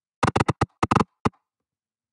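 Audio scrubbing of a music track in a video editor: about seven short, choppy snippets of the song stutter out within a second, as the playhead is dragged across the end of the clip.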